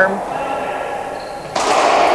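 Racquetball rally on a walled court: ball impacts and play echoing in the enclosed court, then a sudden loud burst of noise about one and a half seconds in that carries on to the end.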